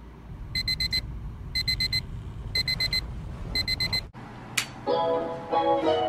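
Digital bedside alarm clock sounding its wake-up alarm: four groups of four quick high beeps, one group a second, over a low steady hum. The beeping cuts off just after four seconds, a rising whoosh follows, and music with plucked notes starts near the end.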